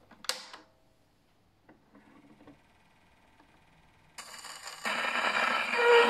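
A portable wind-up gramophone being set going: a couple of sharp clicks as it is handled, then the needle lands on a spinning 78 rpm shellac record, with surface hiss and crackle from about four seconds in. The old recording's music starts about five seconds in.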